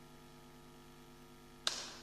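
Faint steady hum, then a single sharp knock near the end that dies away over a fraction of a second.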